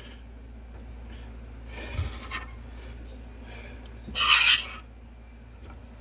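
Kitchen handling noise around a metal baking pan: a soft knock about two seconds in and a short, loud scraping rustle a little past the middle, over a steady low hum.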